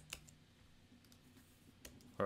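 Near silence broken by a sharp computer keyboard keystroke about a tenth of a second in, and a fainter keystroke near the end.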